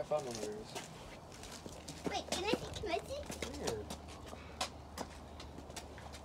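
People talking at a distance, faint and indistinct, in a few short stretches, with occasional light clicks between them.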